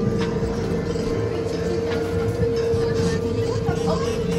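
Dark-ride car running along its track: a low rumble with a steady hum held throughout.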